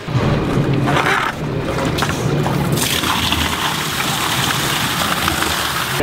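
Water running and sloshing as dirty rinse water is pumped out of the pond bed, over a steady low hum. A louder rushing hiss starts about three seconds in.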